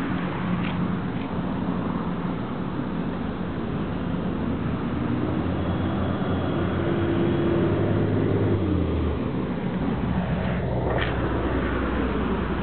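Road traffic: a steady low rumble of vehicles, with one motor vehicle's engine swelling louder as it passes in the middle, and a brief sharp knock near the end.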